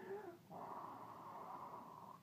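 A child blowing out one long breath, from about half a second in for about a second and a half, just after a brief vocal sound.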